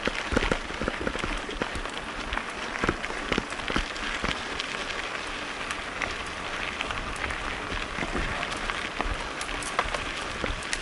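Mountain bike rolling fast down a loose gravel road: steady crunch of the tyres over stones, with many quick clicks and knocks as the bike rattles over bumps.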